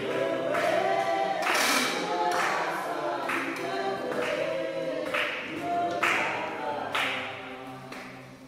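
A group of people singing together unaccompanied, with hand claps keeping the beat a little under once a second; the singing fades out near the end.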